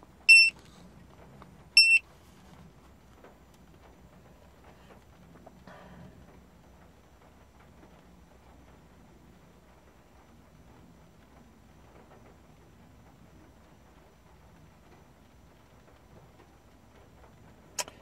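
Two short, high-pitched key-press beeps from an Autel AutoLink AL329 OBD-II scan tool, about a second and a half apart near the start. After them there is only faint room tone, with a small click near the end.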